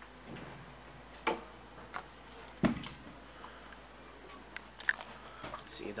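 KONE traction elevator answering a call: a few sharp clicks and knocks from its door and mechanism, the loudest about two and a half seconds in, with lighter ticks near the end as the door opens.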